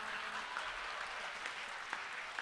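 Audience applauding, an even, steady patter of many hands clapping.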